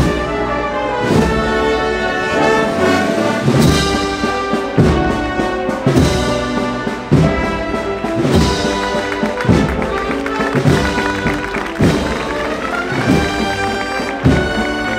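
A processional band playing a slow Holy Week march, with brass to the fore and a steady drum stroke about every 1.2 seconds.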